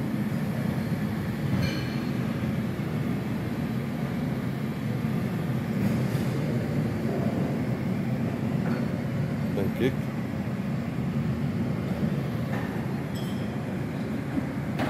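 Steady low room hum in a buffet hall, with a few faint clicks about two, six and ten seconds in.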